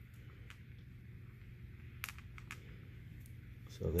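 Quiet handling sounds: a few faint clicks as paracord and a metal split key ring are moved about on a tabletop, over a low steady hum.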